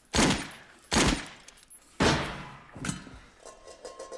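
Gunshots in a film soundtrack: three sharp shots about a second apart, each trailing off in a short echo, followed by fainter knocks.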